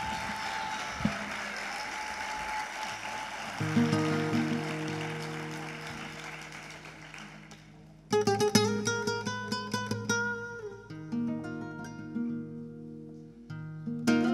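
Audience applause fading away while an acoustic guitar starts playing. About eight seconds in the guitar strikes a loud chord, then plays a run of plucked notes and chords.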